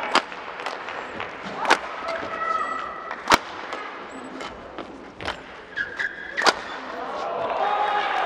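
Badminton doubles rally: rackets crack against the shuttlecock at irregular intervals, the sharpest hit about three seconds in. Court shoes squeak briefly on the mat between shots, over the hum of the crowd in the arena.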